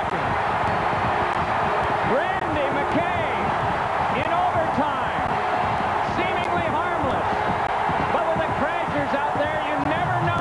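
Hockey arena crowd cheering and yelling after a goal, a loud, steady din of many voices.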